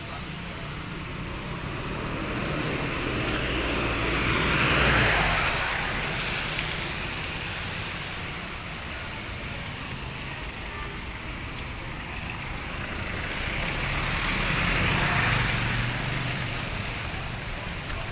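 Traffic on a wet street: two vehicles pass, each a swell of tyre hiss that rises and fades, the first about five seconds in and the second near fifteen seconds, over a steady low rumble.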